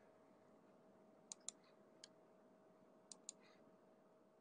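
Faint computer mouse clicks: a pair about a second in, a single click at about two seconds, and another pair near three seconds, the clicks in each pair about a fifth of a second apart. A faint steady hum lies underneath.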